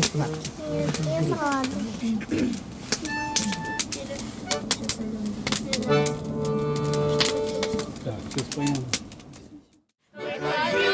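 Voices talking over a few held accordion notes, with frequent sharp clicks and crackles; the sound cuts off abruptly just before the end.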